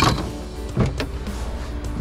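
Lid of a white foam cooler being pulled open, with a sharp knock as it starts and two more knocks just under a second later, over steady background music.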